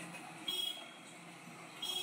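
Faint street background noise with two short high-pitched chirps, about a second and a half apart.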